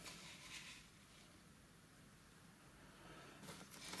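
Near silence: room tone, with faint scraping of hexagonal game-board sections being slid together on a table just after the start and again near the end.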